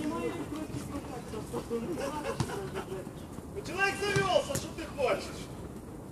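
Players' voices calling out during a football game, loudest as a drawn-out shout about four seconds in. A few short knocks of the ball being kicked come through between the calls.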